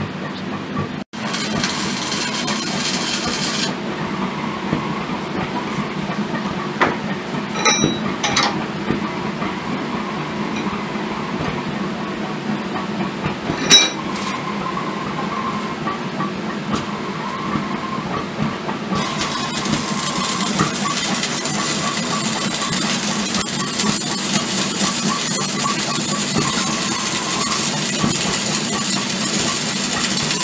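Arc welder crackling steadily from a little past halfway on, laying a weld bead in the beveled joint between a leaf-spring steel bit and a mild-steel tomahawk eye. Before it come a few sharp clicks and knocks.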